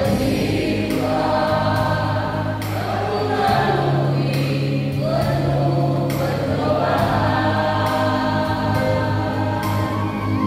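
Mixed choir of women and men singing a hymn together, with long sustained low accompanying notes underneath.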